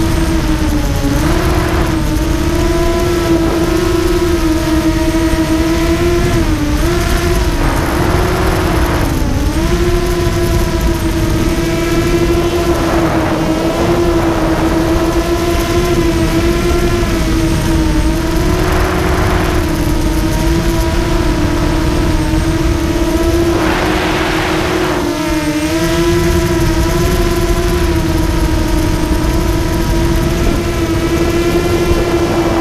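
Emax 250 racing quadcopter's four Emax MT2204 2300KV brushless motors spinning HQ 6045 props at speed, heard from the onboard camera: a steady high motor whine that dips in pitch briefly a few times, with several bursts of rushing air noise.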